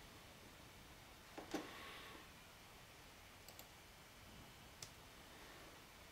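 A few clicks of a computer mouse over near silence: one louder click about a second and a half in, a quick pair of lighter clicks past the middle, and one more near the end.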